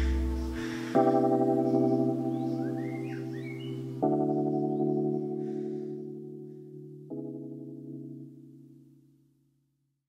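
Background music: slow sustained keyboard chords, a new one about every three seconds, each dying away, with the music fading to silence near the end.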